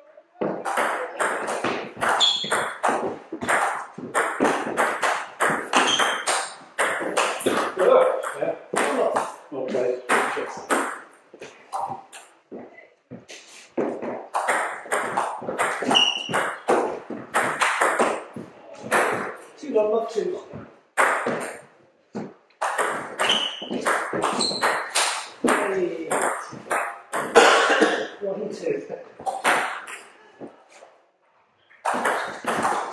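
Table tennis rallies: the ball clicking back and forth off the bats and bouncing on the table in quick runs, with short pauses between points.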